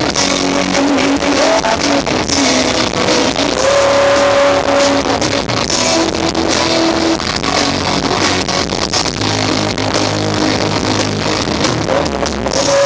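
A live rock band playing loud over a stage sound system, heard from within the audience: electric guitars, bass and drums with regular drum hits and held melodic notes.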